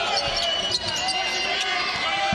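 A basketball being dribbled on a hardwood court in an arena, a few irregular bounces over the hall's background noise.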